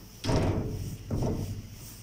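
Two thuds with a rattle, about a quarter second in and again about a second in, from a door that will not open as it is pushed and its handle tried.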